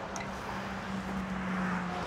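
Road traffic: a car approaching along the street, growing gradually louder, over a steady low hum.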